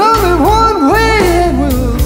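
Blues-rock music: an electric guitar played with a slide, its notes swooping up and down in pitch, over bass and drums.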